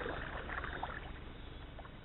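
Water splashing and lapping around a kayak moving along a shallow creek, loudest at first and dying away through the second half.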